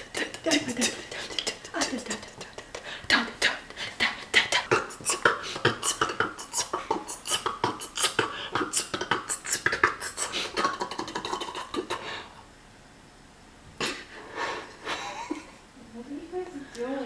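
Beatboxing: a rapid string of percussive mouth clicks and hisses with snatches of voice, breaking off for a couple of seconds near the end before a few more sounds.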